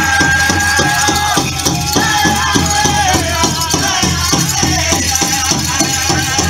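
Powwow drum group playing a men's fancy dance song: a big drum struck in a steady beat of about four strokes a second, with singers holding long, high notes over it.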